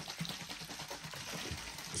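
Drink sloshing inside a plastic bottle of Prime lemonade as it is shaken, a steady churning, splashing noise.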